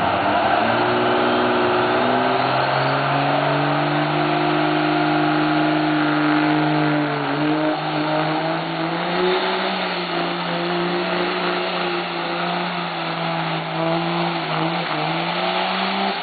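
Diesel pickup truck engine at full throttle pulling a sled in the 8000 lb Super Street Diesel class, pouring black smoke. It revs up just after the start and holds a steady high pitch. About halfway through it dips briefly, then climbs higher and holds until it drops off right at the end.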